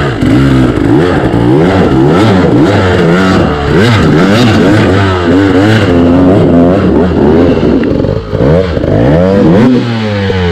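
Enduro dirt bike engine revving up and down again and again as the bike is worked up a steep rutted climb. A steady lower engine drone sits beneath it.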